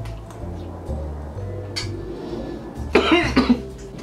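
Background music with a steady bass line; about three seconds in, a man gives a brief, loud cough lasting about half a second.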